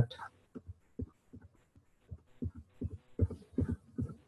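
Computer keyboard keystrokes: irregular soft key taps, sparse at first and quicker in the second half, as a command is entered at a MySQL terminal prompt.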